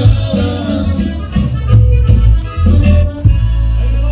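Live Mexican regional band music with accordion over bass and a steady drum beat, played loud through a PA. The beat stops about three seconds in, leaving a sustained low note.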